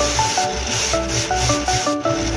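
A block of black Indian wood being ground down against the spinning sanding disc of a bench-mounted A-Winnie angle grinder: a steady abrasive rasp as the ring blank's width is reduced. Background music with short melodic notes and a pulsing bass plays over it.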